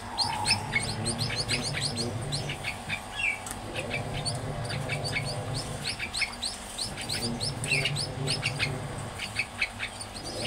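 Munia (emprit) chicks chirping: a rapid, continuous stream of short, high-pitched peeps, several a second.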